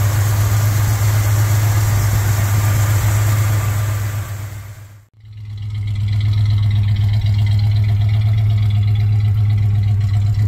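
1968 Cadillac DeVille's 472 cubic inch V8 idling steadily, with a strong low hum. It is heard first at the open hood with a hiss of engine-bay noise over it, then, after the sound dips away briefly about five seconds in, from behind the car at the exhaust, where it sounds cleaner.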